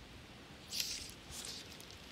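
Fly line on a fly rod swishing during a cast: a short soft hiss about a second in, then fainter ones as the line shoots out through the guides.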